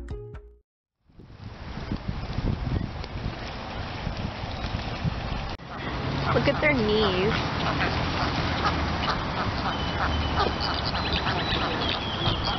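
A flamingo flock at a pond calling in goose-like honks over a steady outdoor background. A louder call glides up and down about six to seven seconds in, and small high chirps come near the end. Before that, the tail of background music cuts off briefly at the start.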